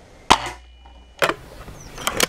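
Anschütz Hakim spring-piston air rifle firing a single shot: a sharp crack with a brief ring after it. About a second later comes a second, quieter sharp knock.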